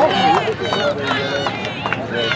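Players and spectators shouting and calling out at a rugby match, several high-pitched voices overlapping without clear words.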